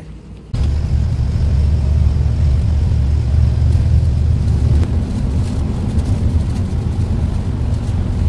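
Heavy goods truck driving along a highway, heard from the cab as a steady low rumble of engine and road noise. It begins suddenly about half a second in.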